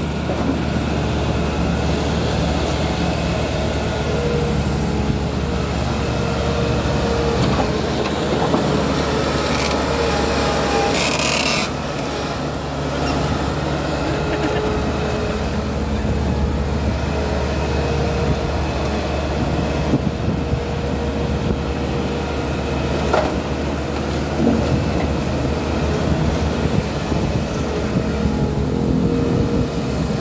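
Bobcat skid-steer loader's diesel engine running steadily as the machine works, lifting and carrying a bucket of dirt. A brief hiss rises about ten seconds in.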